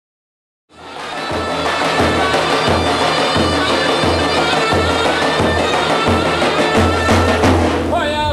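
Turkish zurna playing a shrill, piercing folk melody over two davul bass drums, starting about a second in. Deep davul strokes fall about every two-thirds of a second, with lighter stick clicks between them.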